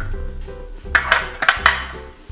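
An egg being tapped against the rim of a small glass bowl to crack it: a quick run of sharp clinks about a second in, over background music.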